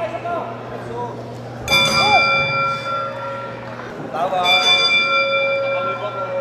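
Boxing ring bell struck twice, a little under three seconds apart, each strike ringing on and fading, marking the end of the round.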